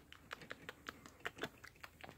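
A quick, irregular run of faint light clicks and taps, about seven a second: a small plastic toy and a plush handled and knocked together against a wooden floor.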